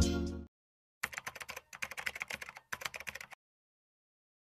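Computer keyboard typing sound effect: three quick runs of key clicks, each under a second with short pauses between, starting about a second in. Before it, the tail of a music track fades out.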